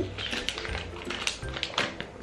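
Background music under a run of short, crisp crackles and taps from a folded paper leaflet being handled and unfolded.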